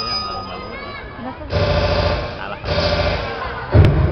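A voice and music played over a loudspeaker, louder from about one and a half seconds in, with a sharp knock near the end.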